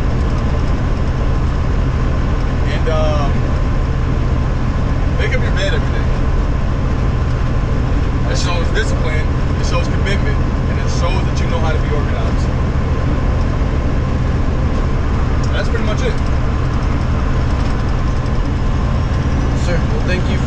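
Semi truck cab interior noise at highway speed: a steady low drone of the diesel engine and road, with a few short bits of voice.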